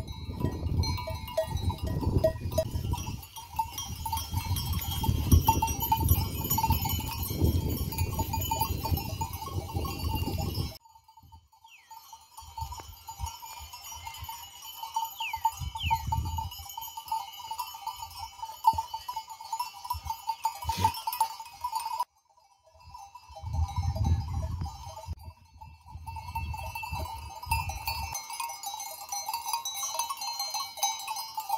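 Many bells on a grazing flock of sheep clinking together continuously. A low rumble covers the bells for the first ten seconds or so and again briefly in the second half.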